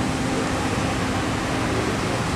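Fountains of Bellagio water jets spraying up and falling back into the lake: a steady rushing hiss of water.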